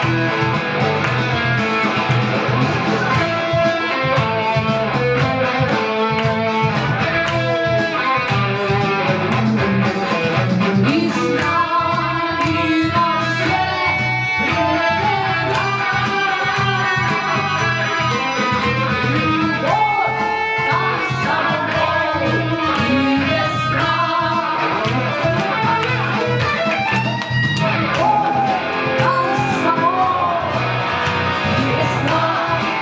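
A live band playing a pop-rock song: electric guitar and keyboard over a steady beat, with a woman singing into a microphone in the later part.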